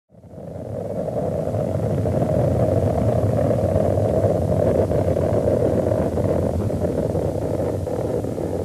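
A steady rushing, rumbling noise drone that fades in over the first second, the opening of an electronic post-punk track.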